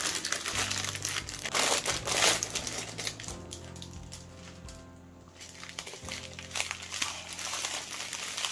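Crinkling and rustling of clear plastic wrap as a bundle of small plastic bags of diamond painting drills is handled and unwrapped by hand. The crinkling is loudest about two seconds in and eases off briefly in the middle.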